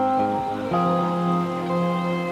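Background music of held chords, the chord changing a little under a second in.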